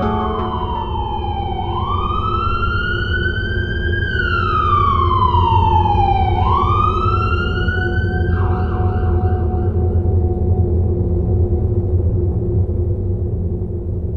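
An emergency vehicle siren wailing, its pitch sliding slowly down and up through about two cycles before cutting off about eight seconds in, over a steady rumble of street traffic.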